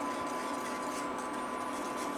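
Wire whisk stirring thin sauce in a stainless steel saucepan, a soft steady swishing, over the steady electrical hum of a Duxtop induction cooktop that has just been switched on.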